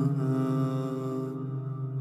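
A male reciter's chanted Quran recitation (tajweed): one long held note on a single pitch that tapers and fades near the end, the drawn-out close of a verse.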